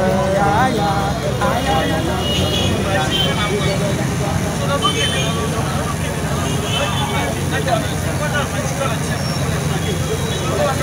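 Men's voices, strongest in the first second and then fainter, over a steady low rumble of street traffic.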